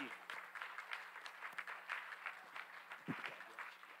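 Congregation applauding, faint and scattered, over a steady low hum.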